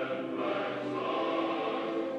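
A group of people singing together, holding long notes that change pitch one after another.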